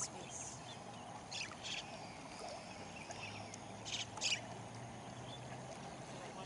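Short high-pitched animal chirps, mostly in quick pairs, the loudest pair about four seconds in, over a steady low hum.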